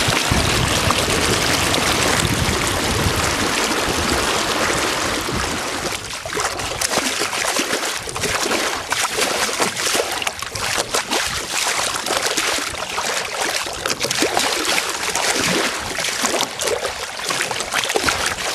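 Lake water rushing, splashing and gurgling along the wooden hull of a Welsford Pathfinder sailing dinghy under way. Dense rushing with a low rumble for about the first six seconds, then lighter lapping made of many small splashes and trickles.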